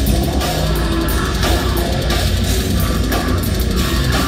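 Brutal death metal band playing live: distorted guitars, bass and a fast-hitting drum kit in a loud, dense, unbroken wall of sound, heard from the crowd.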